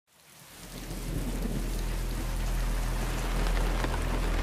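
Rain falling on a car, fading in from silence over the first second, with a low steady rumble underneath.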